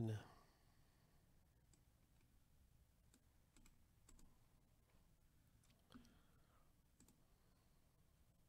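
Near silence broken by a few faint, isolated computer mouse clicks, spaced a second or so apart, as a web page list is selected and copied.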